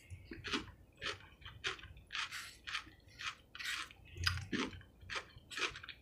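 A person chewing a mouthful of coleslaw, a steady run of chews about two a second.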